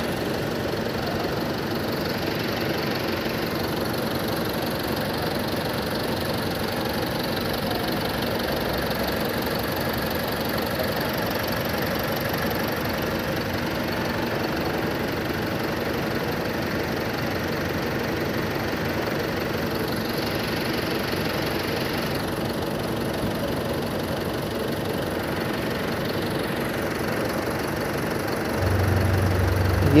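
Tata 3.3-litre four-cylinder common-rail diesel engine idling steadily, with return lines run into an injector back-leak tester.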